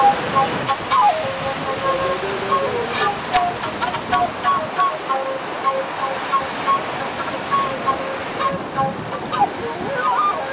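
Ocean surf washing and breaking, heard as a steady rushing, with background music of short repeated notes laid over it.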